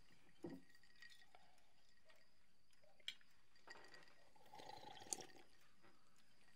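Near silence with faint drinking-glass sounds: a few small clinks, the sharpest about three seconds in and again about five seconds in, and faint liquid sounds as someone drinks from the glass.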